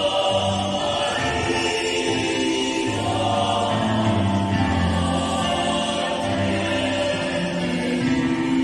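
Mixed choir of men's and women's voices singing together in slow, held chords that change every second or so.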